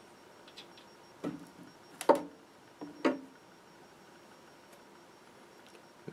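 Three sharp clicks and knocks, the middle one loudest, as the Wavetek 1910's plastic graticule sheet is worked loose from the CRT bezel and lifted off.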